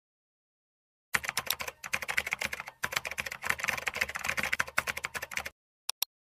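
Computer keyboard typing sound effect: a rapid, uneven run of keystrokes starting about a second in and lasting about four seconds, then two short clicks near the end as the search button is clicked.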